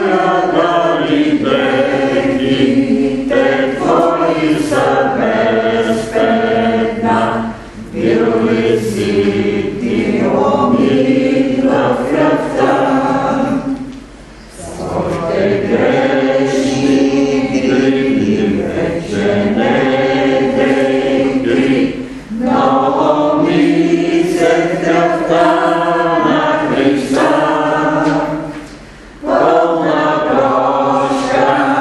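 Choir singing in long held phrases, with short breaks about fourteen and twenty-nine seconds in.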